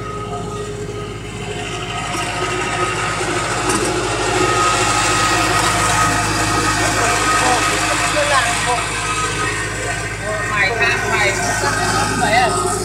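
Machinery of an HDPE pipe butt-fusion welding rig running steadily, a constant drone with a thin high whine, growing louder a few seconds in.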